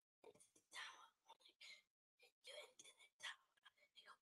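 Near silence with faint, barely audible whispering in short broken bursts.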